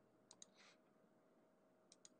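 Near silence broken by faint computer mouse clicks: a quick pair about a third of a second in, followed by a soft brief scrape, and another pair near the end.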